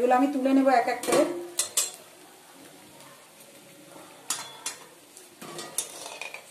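Steel spatula scraping and clinking against a steel frying pan in short separate strokes as pakoras are turned in hot oil, with the oil sizzling faintly underneath.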